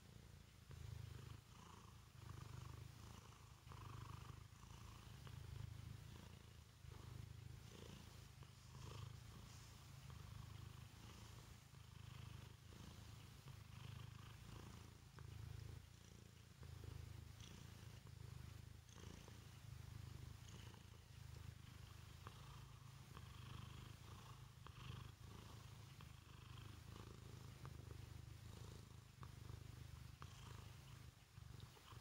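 Domestic cat purring close to the microphone, a low, quiet rumble that swells and fades roughly every second or so.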